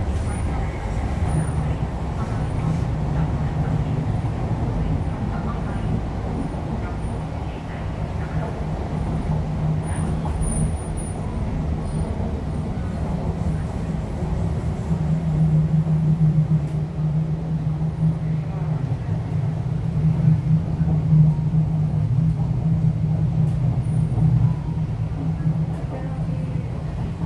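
Interior of a Hong Kong MTR East Rail Line R-Train electric multiple unit in motion: a continuous rumble of wheels on rail with a steady low traction-motor hum, which grows stronger about halfway through.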